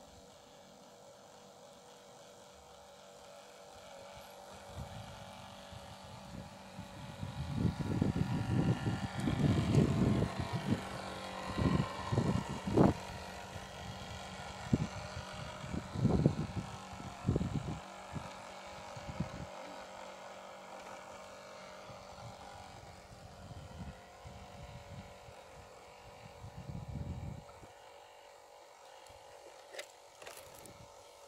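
Motor of a radio-controlled model boat running steadily, a faint whine that swells as the boat passes close and fades as it moves away. Irregular low rumbles, the loudest sound, come and go through the middle.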